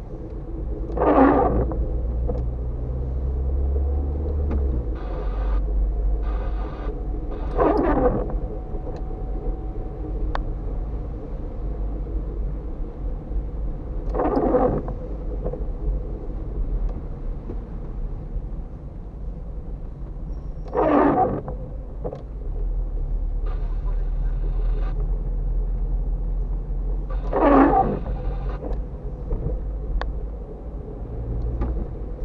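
Inside a car driving on wet roads: a steady low rumble of engine and tyres, with a windscreen wiper sweeping across the glass about every six and a half seconds, five times, on an intermittent setting.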